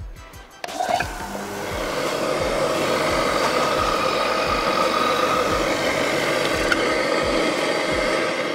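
JOST Big Boy large-format electric random-orbital sander starting up about a second in, building to full speed, then running steadily. It is working a black mineral-material (solid-surface) panel with a dust pad fitted, a pass to take off the leftover sanding dust.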